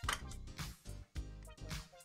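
Quiet background music, with small clicks of the plastic camera mount and Ethernet cable being handled.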